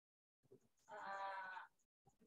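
A person's voice over a video call giving one drawn-out, wavering 'uh' of under a second, about a second in, framed by near silence.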